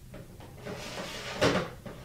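Rustling and clattering of things being moved around a kitchen sink and counter, peaking in one loud knock about a second and a half in.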